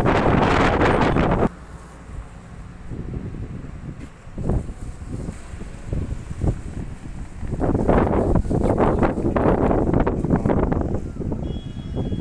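Wind buffeting the phone's microphone in loud, rough gusts. It cuts off suddenly about a second and a half in, stays low with a few short thumps, and picks up again strongly past the middle.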